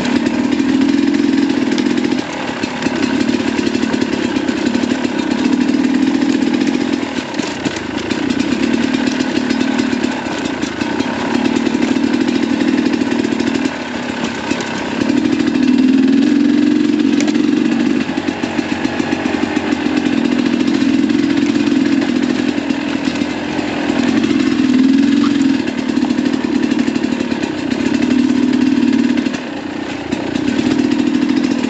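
2022 Sherco 300 SE Factory's two-stroke single-cylinder engine running on the trail, the throttle opening and closing every few seconds, with short lulls where it is backed off.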